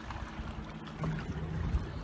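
Wind rumbling on the microphone out on open water, louder from about a second in, with a faint steady low hum under it.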